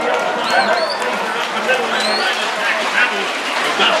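A man's voice, the race announcer calling the heat over the public-address system, with two short rising whistles about half a second and two seconds in.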